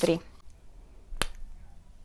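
A single sharp click about a second in: the cap of a liquid eyeliner pen being pulled off.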